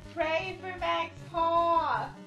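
A woman singing three high, drawn-out notes, the last sliding down in pitch near the end, over background music with a steady beat.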